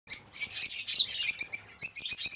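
A flock of zebra finches and budgerigars calling together in an aviary, with many short, high, overlapping chirps that pause briefly near the end.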